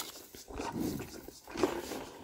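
White rhino calf sucking and slurping milk from a feeding bottle, in repeated pulls a little under a second apart.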